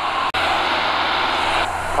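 Cockpit noise of a Van's RV-6A in flight: a steady drone of engine, propeller and air with a low hum under it. The sound drops out for an instant about a third of a second in, then carries on, and the upper hiss eases off near the end.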